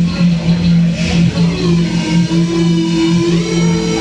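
Live experimental electronic music: a loud, sustained low drone that pulses slightly. About a second and a half in, a second, higher tone glides in and then holds.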